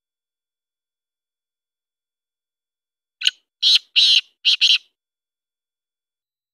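Black francolin calling: about three seconds in, a quick run of five short notes in under two seconds, the first a little apart from the rest.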